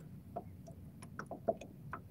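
Faint, irregular small clicks and ticks of handling as fingers work an earthworm onto a fishing hook, the sharpest about one and a half seconds in.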